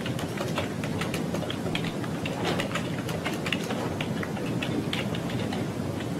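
Steady low courtroom room noise, raised to speech level, with many scattered light clicks and rustles of papers and objects being handled close to the microphones.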